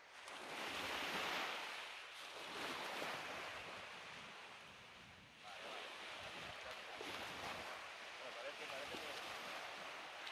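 Sea waves breaking and washing up a beach: one surge builds to a peak about a second in and fades, and a second surge rises about five and a half seconds in and runs on, with a little wind on the microphone.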